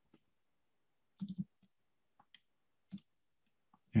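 Quiet clicks from a computer pointing device as a straight line is drawn on the screen: a quick cluster of three a little past a second in, then single clicks near two and a half and three seconds. It is near silent between the clicks.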